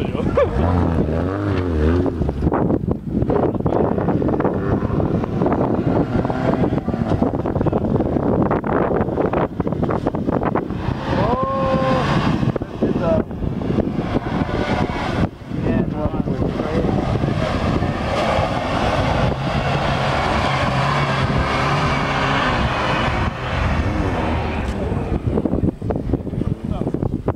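Off-road 4x4's engine running as it drives through a mud pit, with spectators' voices and wind on the microphone mixed in.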